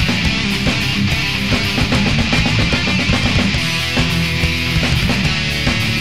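Melodic death metal band playing: distorted electric guitars over fast, dense drumming, loud and steady throughout.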